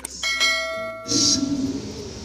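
Subscribe-button sound effect: a click, then a bell ringing with several steady tones that cuts off suddenly about a second in. It is followed by a short hiss and room sound.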